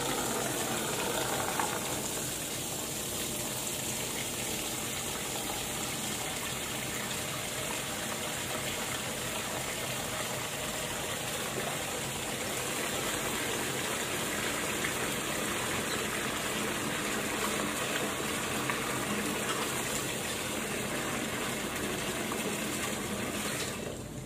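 Tap water running steadily into a laundry sink, cut off shortly before the end.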